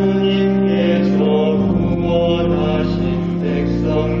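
A Korean psalm chanted by voice over a sustained organ accompaniment. The organ holds low chords that shift twice.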